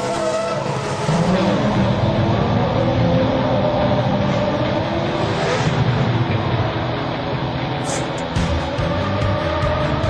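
Red Bull Formula One car's engine revving as it drives past on the street, its pitch sliding up and down, with a short tyre squeal. Background music runs underneath.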